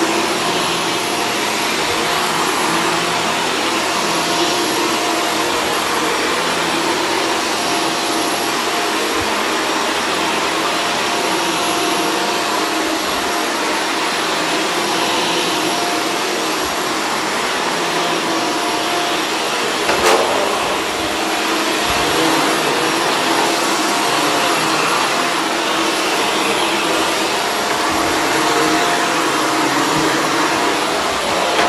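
Upright vacuum cleaner running steadily as it is pushed back and forth over carpet, its motor giving a constant whine. A single sharp click about two-thirds of the way through.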